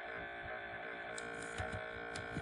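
A few keyboard keystrokes, short sharp clicks in the second half, over a steady fan hum.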